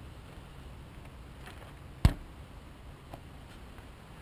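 A single sharp knock about two seconds in, with a much fainter click about a second later, over a low steady background hush.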